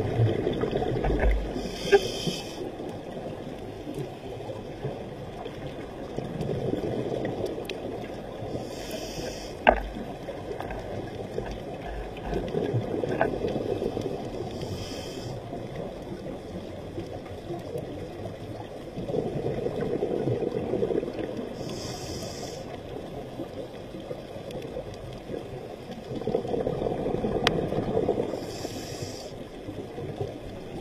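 Scuba diver breathing through a regulator underwater. There are five breaths, about seven seconds apart: each is a short hiss of inhaled air, followed a few seconds later by a longer bubbling rumble of exhaled bubbles. A couple of sharp clicks come in between.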